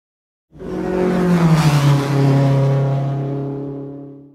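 A car engine passing by, laid over the channel intro. It rushes in about half a second in, drops in pitch as it goes past, then fades away.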